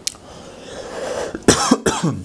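A young man coughing into his fist: a breath in, then a quick run of coughs about a second and a half in.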